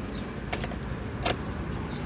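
A car key working in a 2015 Chevrolet Spin's ignition lock: a few sharp clicks with keys jangling, about half a second in and again just past a second.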